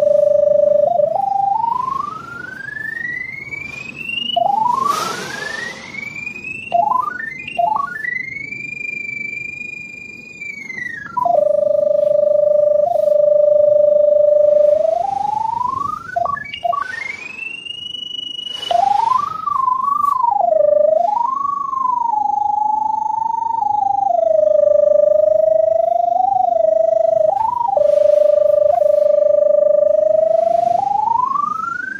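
Audio tone of a RIDGID Scout pipe locator tracking the inspection camera's 512 Hz sonde. A single electronic tone holds steady, then several times glides up to a high whistle and back down, wavering as the signal strength changes. There are a couple of brief rustles.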